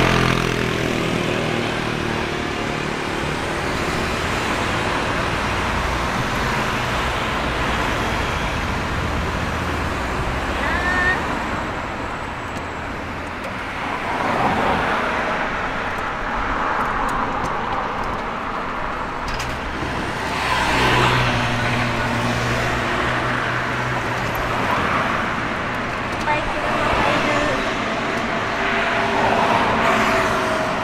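Road traffic on a city street: cars driving past in a steady hum, swelling a few times as vehicles go by.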